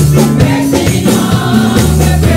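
Youth gospel choir singing in full voice over a live band, with regular drum hits.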